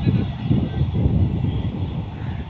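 Low, uneven rumble of a train receding into the distance.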